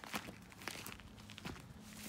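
Footsteps on dirt and landscaping rock: a few faint, uneven crunching steps.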